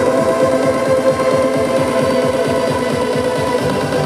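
Trance music played loud over an arena sound system, recorded from within the crowd: held synth chords through a build-up, with the full bass and beat coming back right at the end.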